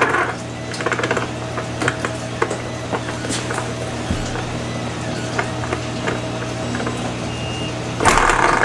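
Small hand-crank generator being cranked hard and steadily to push its output voltage as high as it will go, its gear train giving a steady whirring hum with scattered light clicks and rattles.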